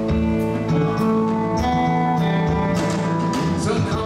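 Live electric blues band: PRS electric guitars playing over bass and drums, with a steady beat of drum and cymbal hits.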